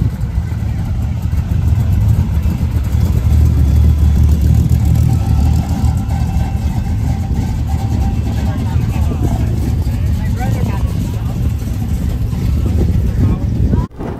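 A steady low rumble, loudest a few seconds in, with faint voices in the background.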